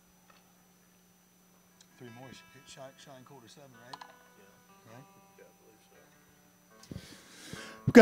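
Quiet stage sound: faint off-mic voices and a few soft guitar notes ringing, over a low steady hum from the sound system. Just before the end there is a short breathy noise at the vocal mic.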